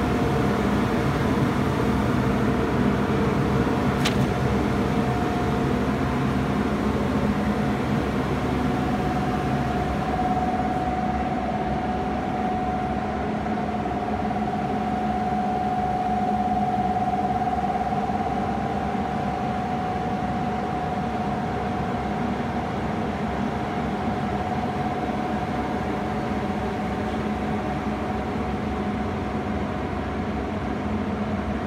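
The built-in extraction blower of a Coral spray booth running steadily: an even hum with a steady high whine over it. A single faint click sounds about four seconds in.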